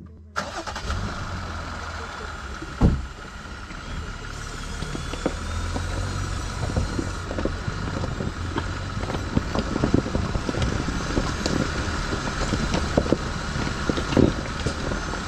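A 2020 Jeep Gladiator's 3.6-litre V6 starting about half a second in, then running steadily as the truck pulls away over a rocky trail, with stones crackling and popping under the tyres. One loud knock comes about three seconds in.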